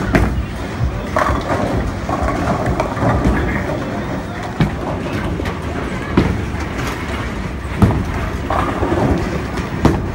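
Bowling alley din: a steady low rumble of balls rolling down the lanes, broken by several sharp clattering knocks of pins being struck, over a background of voices.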